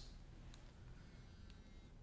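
Near silence: room tone with two faint clicks, about half a second and a second and a half in.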